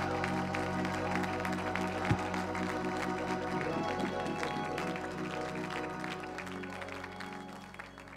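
Church praise music holding sustained chords, with the congregation clapping and cheering in praise, gradually dying down toward the end. A single sharp thump sounds about two seconds in.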